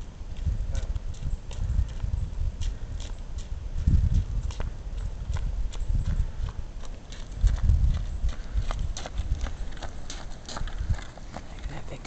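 Wind rumbling on the microphone in gusts, strongest about 4 and 7.5 seconds in, with irregular clicks and taps throughout, like footsteps on asphalt as the camera follows along.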